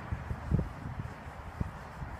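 Wind rumbling on the microphone, with a couple of short gusts.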